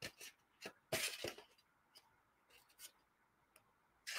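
A few faint knocks and clicks from handling a small painted wooden box on a craft table, with a short cluster of them about a second in.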